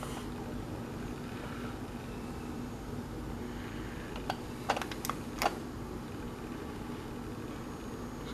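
The push-button switch of a battery LED wall light clicking a few times in quick succession about halfway through as it is pressed to turn the light off, over a steady low room hum.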